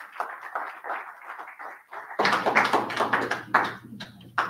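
Audience applauding: many hands clapping in an irregular patter, which grows louder about two seconds in.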